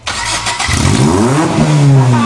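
Nissan car engine revved hard through a straight exhaust pipe stacked up out of the hood. It starts abruptly and loud, and its pitch climbs for about a second and a half, then holds high.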